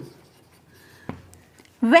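Marker pen writing on a whiteboard: a faint short squeak, then a sharp tap a second in, between stretches of a woman's speech.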